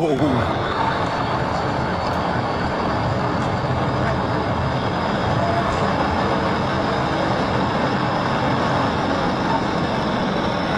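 Police car driving at speed in a pursuit: steady engine and road noise heard from inside the car.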